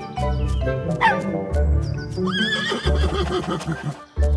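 Background music with a horse whinnying once, a short wavering call a little past halfway, as a cartoon sound effect.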